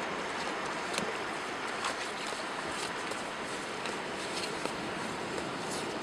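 Steady wash of sea surf on a beach, with a few faint scattered clicks.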